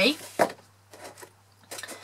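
A cardstock gift box handled and turned over in the hands: one short tap just under half a second in, then faint papery handling sounds near the end.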